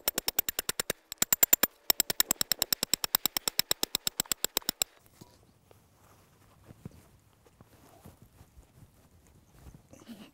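Hammer rapidly striking the steel driving rod of an earth anchor, about five or six ringing metal blows a second with a brief pause about a second in, driving the anchor into the ground. The blows stop about five seconds in, leaving only faint knocks and rustling.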